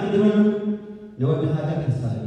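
A man's voice intoning two long, drawn-out phrases on a nearly steady pitch, chant-like rather than ordinary speech.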